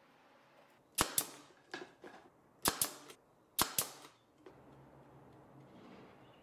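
Sharp woodworking knocks and clicks, four close pairs about a second apart, as wooden boards and a bar clamp are handled on the bench.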